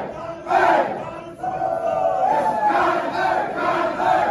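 A column of soldiers chanting a marching cadence in unison as they march, with short shouted lines and a drawn-out sung phrase about two seconds in.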